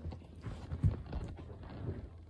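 A few soft, irregular thumps and knocks, the clearest just under a second in and another near the end.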